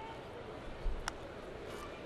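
Background crowd chatter in a ballpark, with one sharp knock about a second in.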